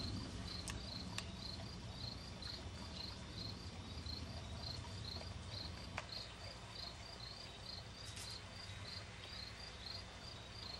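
A cricket chirping steadily and faintly at about three high chirps a second, over a low steady hum, with a few faint clicks.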